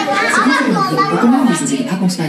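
Several women and children talking over one another in overlapping chatter.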